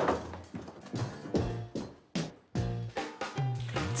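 Background music with a rhythm of drum hits over a low bass line.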